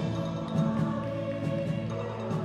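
Percussion ensemble playing live: a soft, held chord from a large marimba section, with faint light mallet strikes above it.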